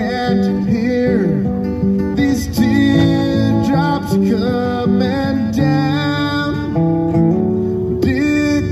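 Acoustic guitar played live, a steady run of picked and strummed notes in an instrumental passage, with a few pitches gliding up and down.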